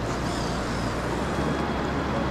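Steady rush of a flowing river: an even hiss with no distinct events.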